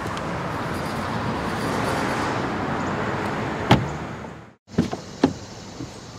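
A steady rushing noise, then a sharp knock of a car door about three and a half seconds in; after a brief gap, two lighter clicks of a car door.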